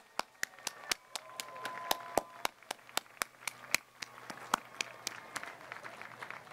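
Single pair of hands clapping close to the microphone, steadily at about four claps a second, over fainter applause and cheering voices from a crowd.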